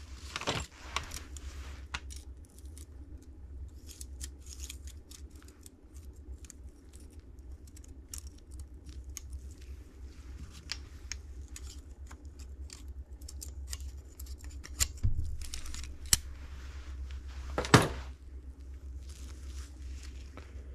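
Metal clinks and small clicks of a piston ring expander tool being handled as a top compression ring is spread and slid onto a piston, over a steady low hum. One sharper metallic clack comes near the end.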